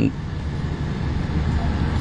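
Steady engine hum and road noise inside the cabin of a moving Mitsubishi 2,500 cc vehicle.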